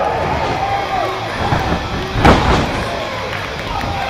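One loud slam, a body hitting the canvas of a wrestling ring, about two seconds in, with spectators shouting around it.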